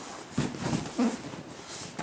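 Soft thump and cloth rustling of a body in a gi rolling on a mat, feet against a padded wall, with a short breathy vocal sound about a second in.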